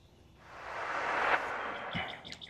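A soft whoosh of noise that swells and fades over about a second and a half: an editing transition effect over a fade between shots.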